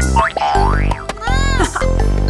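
Upbeat children's song backing music with cartoon sound effects: a rising pitch glide in the first second, then a springy boing about halfway through.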